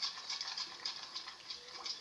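A metal spoon stirring a runny yogurt and potato-juice mixture in a bowl: rapid, light clicks and scrapes of the spoon against the bowl's sides.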